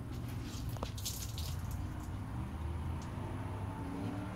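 Water dripping and splashing softly onto a shower pan from a freshly bathed, wet dog, over a steady low hum.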